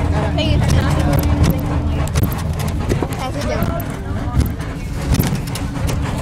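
Low steady rumble of a school bus's engine and tyres heard inside the cabin, with frequent rattles and knocks and a steady hum that stops about two seconds in. Voices chatter in the background.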